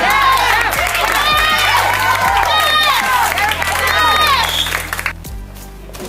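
A group of women's voices cheering and whooping together in many overlapping high calls, cutting off suddenly about five seconds in. It is the celebration as the padded mock assailant goes down.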